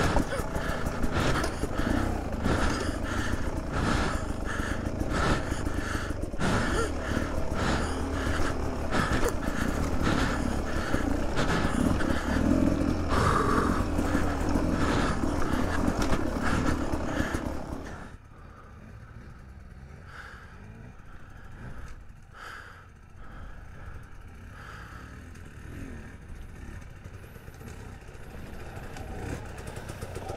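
Beta 300 RR two-stroke dirt-bike engine running under the rider over rough, rocky trail, with clatter of the bike over rocks. About 18 seconds in the sound drops sharply to a much quieter level with only occasional knocks, and it builds again near the end.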